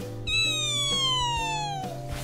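A single high, pitched tone that glides slowly downward for about a second and a half, over steady background music.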